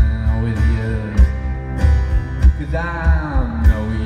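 Live rock band playing, with strummed acoustic guitar, electric guitar and drums keeping a steady beat of a little under two hits a second. A sliding guitar or voice line bends in pitch near the end.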